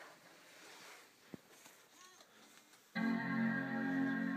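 Apple iMac startup chime: one sustained organ-like chord that starts suddenly about three seconds in, the sign that the computer is booting after its power button was pressed. Before it, faint handling sounds and a single small click.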